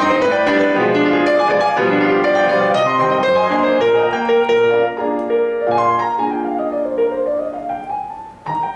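Grand piano played solo, dense overlapping notes and chords; near the end a quick run sweeps down and back up.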